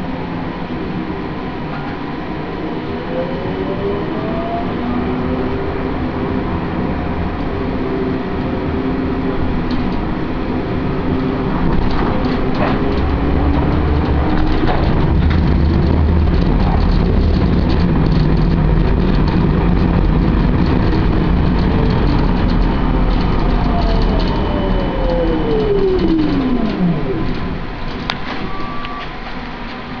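Interior of a Siemens Combino Classic low-floor tram running. Its traction drive gives a whine that rises in pitch as it pulls away, the running noise swells at speed, and then a whine falls steadily in pitch as the tram brakes to a halt near the end. A sharp click comes just after it stops.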